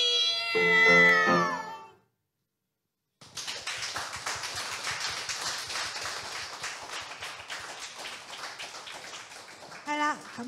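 Two female voices hold the final sung note of a duet with vibrato over a closing piano chord, ending about two seconds in. After a second of silence, audience applause follows, fading slightly toward the end.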